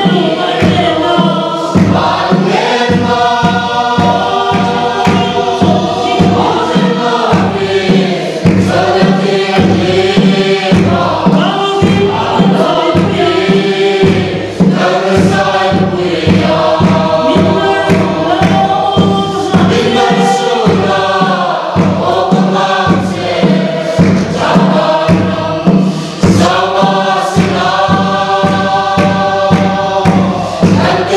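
Mixed choir of men's and women's voices singing a Mizo gospel hymn together, carried by a steady drumbeat of about two strokes a second from a large traditional Mizo drum (khuang).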